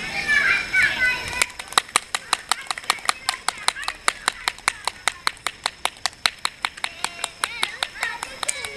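Voices, high like children's, in the first second and a half. Then hands clapping in a quick, steady beat of about six claps a second, with voices between the claps.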